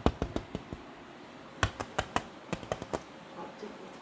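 Irregular sharp taps and clicks against a window pane, in two quick runs: several in the first second, then another run from about a second and a half in to about three seconds.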